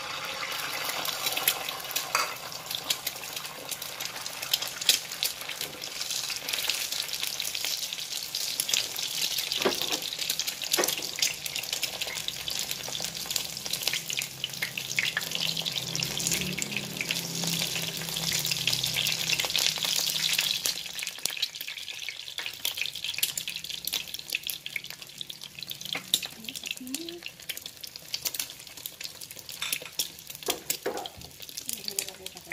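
Egg white frying in hot oil in a nonstick pan: steady sizzling with dense crackling, loudest over the first two thirds and easing off after that.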